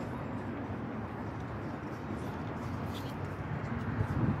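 Steady low rumbling outdoor background noise, with no distinct event standing out.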